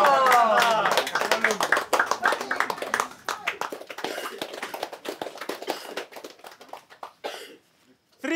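A group clapping by hand, with cheering shouts at first; the applause thins out over the second half and dies away shortly before the end.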